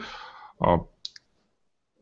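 A man's hesitant 'uh' picked up by a video-call microphone, followed about a second in by two faint, short clicks.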